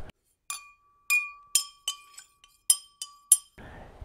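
Glass clinking: about eight light, sharp clinks over roughly three seconds, with a thin ringing tone held between them.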